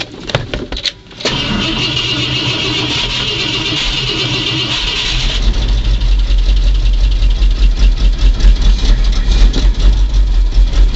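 1970 Ford F-250's 360 cubic-inch V8 cold-started: a few clicks as the accelerator pedal is pumped, then about four seconds of starter cranking with a high whine. The engine catches about five seconds in and runs with a deep, uneven pulse.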